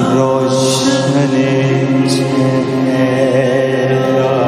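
A devotional bhajan: a voice singing long held notes in a chant-like style over musical accompaniment, with two short bright hisses about half a second and two seconds in.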